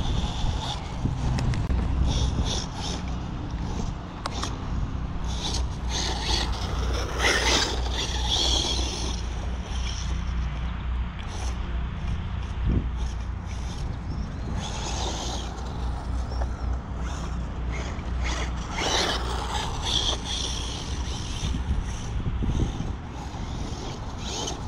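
Arrma Typhon 6S BLX brushless RC buggy running across grass in several bursts, its motor and tyres heard from some distance, over a steady low rumble on the microphone.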